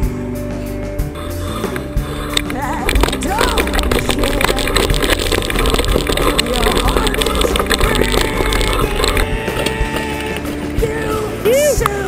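Background music playing over the rattle and clatter of a mountain bike riding down a rough dirt track, busiest through the middle of the stretch.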